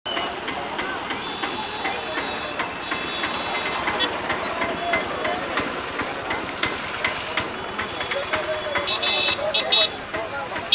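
Crowd chatter from many people on a busy street, mixed with motorbike traffic noise, and a vehicle horn tooting a few short times near the end.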